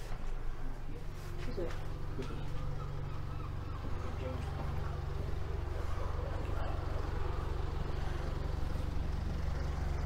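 Low, steady rumble of road traffic coming in through an open shop door, growing louder about halfway in, with faint voices murmuring in the background.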